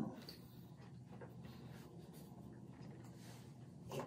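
Soft paper rustling as a picture-book page is turned by hand, over a faint steady low hum.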